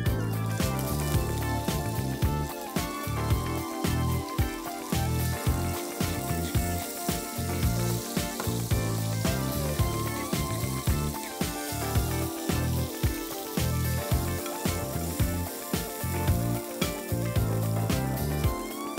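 Background music with a steady beat over chanterelle mushrooms sizzling in hot oil in a frying pan, with a pepper mill grinding around the middle.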